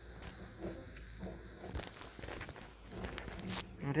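Footsteps on a boardwalk, a scatter of soft taps and scuffs.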